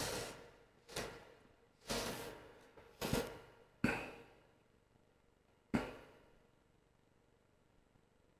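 Six short, soft rustles and scuffs, roughly one a second, from fingers handling a small metal vape coil head and its cotton wick, stopping about six seconds in.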